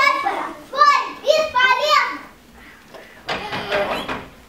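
A young child's high-pitched voice speaking for about two seconds. Near the end comes a short burst of rustling, shuffling noise.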